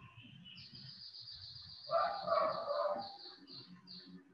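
A rooster crowing once, about two seconds in, for about a second. Behind it, a high, rapidly pulsing trill starts about half a second in and stops near the end.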